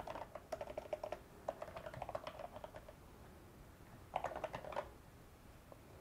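Faint typing on a computer keyboard, in two runs of quick keystrokes: one over the first two and a half seconds and a shorter one about four seconds in.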